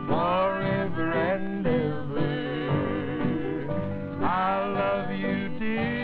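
A country song sung with acoustic guitar accompaniment. The voice swoops up into long held notes at the start and again about four seconds in. The sound is thin and narrow, like an old television recording.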